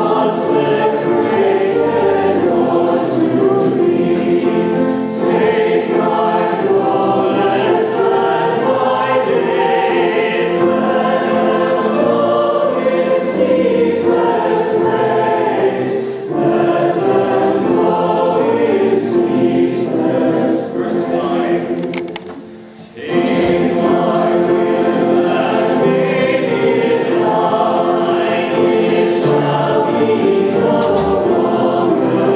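A large congregation singing a hymn together from hymnals, with a full, choir-like sound. The singing stops briefly about 22 seconds in, then carries on.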